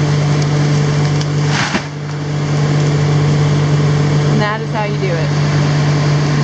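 Caterpillar 330D L excavator's diesel engine running at a steady, loud drone. A short rush of noise comes about a second and a half in, and a brief wavering higher-pitched sound near the end.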